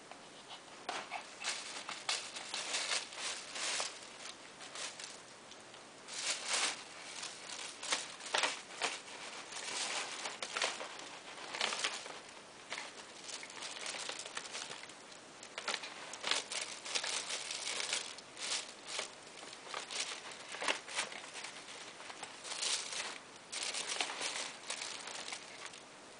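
Plastic bags crinkling and rustling in irregular bursts as a small dog roots through them with her head.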